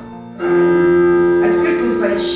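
Portable electronic keyboard played by a child: about half a second in, a loud note sounds and is held steady, with further notes joining near the end.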